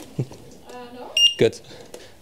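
A single short, high electronic beep from an electric unicycle's beeper, a little over a second in.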